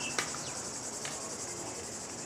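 Insects chirping in a steady, high trill, with a faint click about a quarter of a second in.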